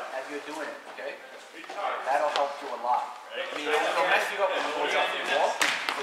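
Voices of players talking in a gym, with a sharp slap of a volleyball being hit near the end and a fainter hit about midway.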